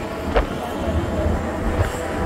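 Wind rumbling on the microphone over the steady drone of a passenger ferry under way, heard from its open deck. A brief rising squeak about a third of a second in.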